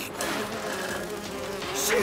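Cartoon bee buzzing effect: the steady buzz of a tiny, bee-sized flying hero's wings.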